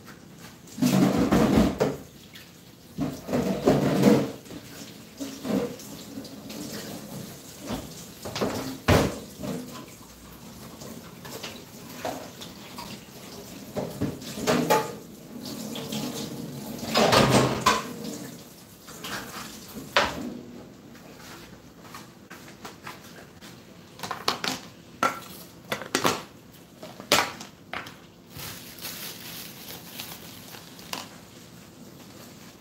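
Kitchen sink in use: tap water running in uneven spells, with dishes and utensils knocking and clinking against each other and the sink. The loudest spells come about a second in, around four seconds and around seventeen seconds, with scattered sharp clinks and knocks between them.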